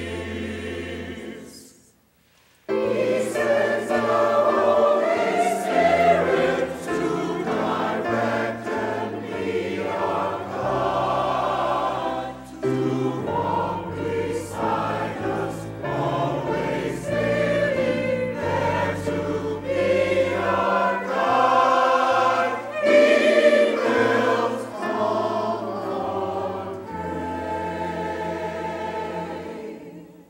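Church choir singing in parts over low held bass notes. The opening chord dies away into a pause of about a second, then the choir comes back in and sings on, fading out at the end.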